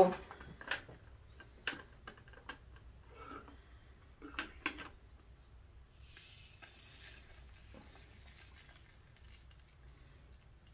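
Faint clicks and taps of plastic diamond-painting trays being handled, then a soft rattling hiss of small resin diamonds being poured from one tray into another about six seconds in.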